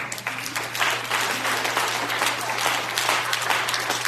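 A congregation applauding, with many people clapping steadily, over a low steady hum.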